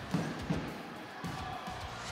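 Faint music over the low background noise of an indoor futsal hall, with a couple of light knocks in the first half second.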